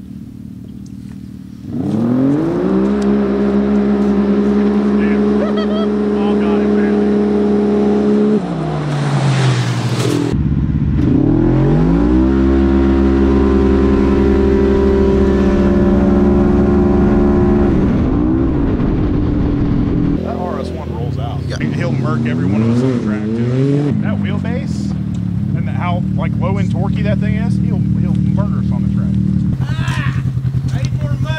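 Side-by-side UTV engines, including a Polaris RZR RS1, at full throttle in a drag race. The revs climb quickly and then hold one steady high pitch as the CVT keeps the engine at its shift speed, before dropping off as the throttle is released about 9 s in. The same run is heard again from about 11 s to 18 s, and from about 21 s the pitch wavers up and down before steadying.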